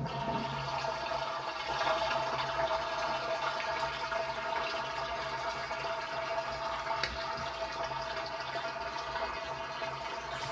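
Soapy dishwater draining out of a stainless steel kitchen sink, a steady rush of water swirling down the open drain with a held tone running through it.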